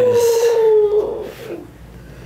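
A man's long, drawn-out "oooh" lasting about a second on a slowly falling pitch. It is his vocal reaction as a chiropractic adjustment releases a jammed vertebra in his upper back, and it fades into quiet.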